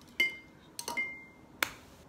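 A few sharp clicks in under two seconds. The first two ring briefly with a high clear tone, like chopsticks striking a ceramic bowl, and the last is a dry, sharp snap.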